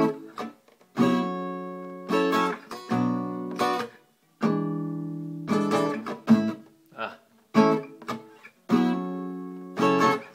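Acoustic guitar strumming a progression of barre chords, about a dozen strums, some chords left to ring and decay for a second or more, others choked short. It includes the E7 voicing the player is still struggling to get down.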